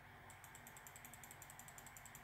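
Near silence, with a faint, rapid, even ticking running through it.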